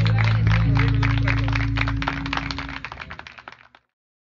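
Audience clapping over a llanera band's last held chord. The low notes of the chord stop about two seconds in, and the clapping fades out near the end.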